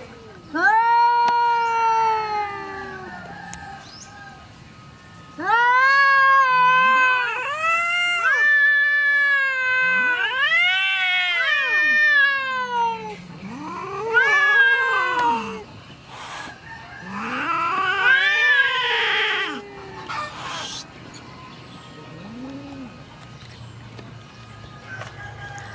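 A calico cat caterwauling in a standoff with another cat: a series of long, drawn-out yowls, each rising and then falling in pitch, with short pauses between them. One call about three-quarters of the way through is rougher and hissier than the rest. This is the aggressive warning of a cat defending its ground against an intruding male.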